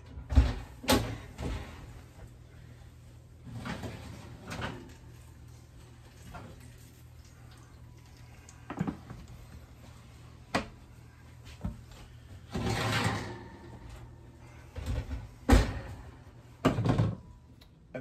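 Oven door opened and an aluminium foil pan of baked ziti pulled out of the oven and set down: a series of clunks, knocks and short metal scrapes, the loudest knock about three seconds before the end.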